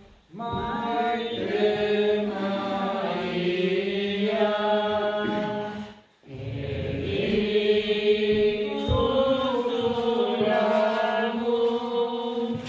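Sung liturgical chant during the offertory of a Mass, the preparation of the gifts, in two long phrases with a brief break about six seconds in. A steady low note holds under the voices.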